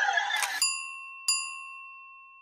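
Logo intro sound effect: a rising whoosh that ends about half a second in, then a bell-like ding struck twice, under a second apart, each ringing out and fading.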